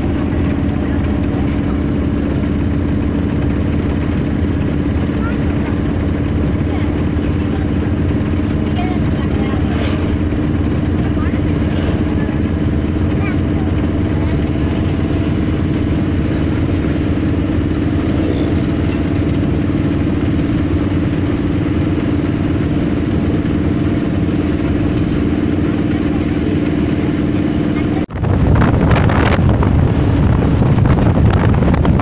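Steady engine drone and road noise heard from inside a moving vehicle, a constant hum that holds one pitch. Near the end it cuts off abruptly and gives way to wind buffeting the microphone.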